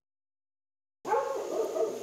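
About a second of dead silence at the edit, then a drawn-out pitched animal call that lasts about a second, over steady outdoor ambience with a faint high hum.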